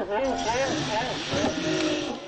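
People's voices calling out, with a steady hiss underneath.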